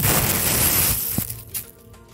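Thin plastic carrier bag rustling and crinkling as a phone is pulled out of it, for about the first second, ending with a single click, then quiet.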